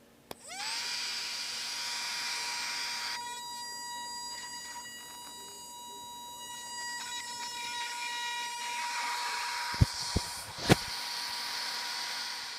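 Small electric starting motor screwed onto the front of a 3D-printed micro jet engine: it switches on with a click, spins up within half a second to a steady high whine with many overtones, and the whine fades about nine seconds in. Three sharp knocks come near the end.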